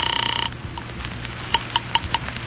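Telephone ringing signal heard over the line, a steady buzzing tone that cuts off about half a second in as the call is picked up; faint clicks and crackle follow.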